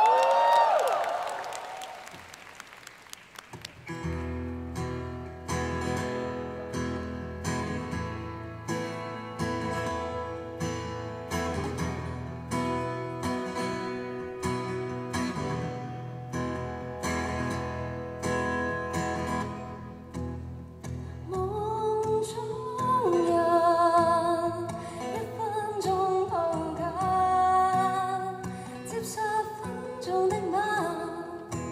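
A brief cheer at the start, then a solo acoustic guitar strummed at a slow, steady pace. About twenty seconds in, a woman's voice comes in singing over the guitar, with live-concert reverberation.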